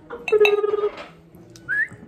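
Liquid glugging out of a glass bottle into a glass tankard in a quick run of pulses, followed near the end by a short rising squeak.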